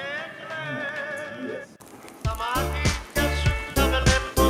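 A voice held in one long wavering note, cut off sharply a little under two seconds in; then music starts with a steady heavy beat and deep bass.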